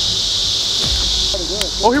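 Steady, high-pitched chorus of insects on a summer evening. It drops in level a little over a second in, and a man's voice comes in near the end.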